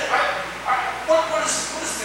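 Speech only: a man preaching in an animated, emphatic voice.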